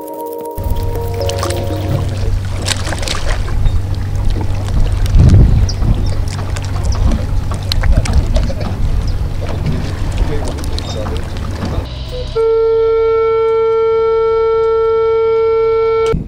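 Motorboat running on a lake: a steady low engine drone under wind and water noise. About twelve seconds in, a loud steady tone with overtones starts and holds unchanged.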